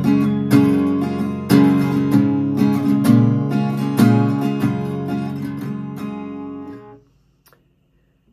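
Acoustic guitar, capoed at the third fret, strummed in a repeating chord pattern with sharp strokes and ringing chords. The strumming stops about seven seconds in and the strings die away.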